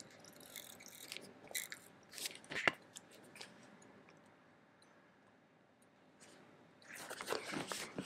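Washi tape being handled, peeled and pressed onto a paper journal page by hand: faint crackles and rustles over the first few seconds, a near-silent pause in the middle, then rustling again near the end.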